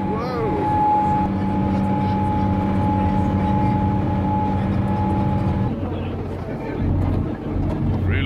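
Trawler deck machinery running: a low steady engine hum under a steady mechanical whine from the deck winch gear, the whine cutting off about six seconds in while the hum carries on.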